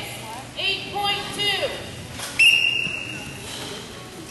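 A referee's whistle is blown once: one sudden, high, steady blast of about a second, ringing in a large gym hall. Before it, voices can be heard.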